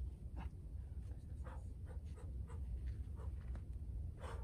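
A bouldering climber's hands and rock shoes scuffing and scraping on granite in a string of short, irregular scratches as the climber moves up the face, over a steady low rumble.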